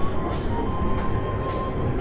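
Steady low droning background film score: a sustained rumble with a faint held high tone over it, no beat.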